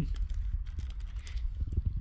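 Hand-handling noise: light rustling and scattered small clicks as a plastic bag and small metal solenoids are handled, over a steady low rumble.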